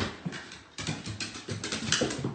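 A dog's paws and claws clattering on hardwood stair treads as it comes down the stairs, a quick, uneven run of knocks.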